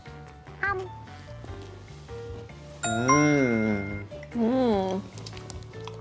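Light background music with a bright chime that rings out suddenly about three seconds in. Over it come drawn-out, rising-and-falling 'mmm' hums, twice, from someone eating.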